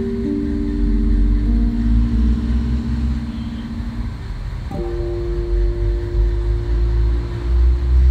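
Guitar playing the closing chords: a held chord rings and fades, then a last chord is struck about five seconds in and left to ring, over a steady low rumble.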